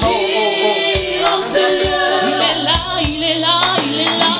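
Gospel worship singing: a group of female singers and a choir sing together at full voice, with a steady beat about once a second.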